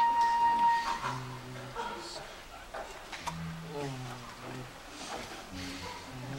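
The song's final held note cuts off about a second in, followed by low voices talking quietly.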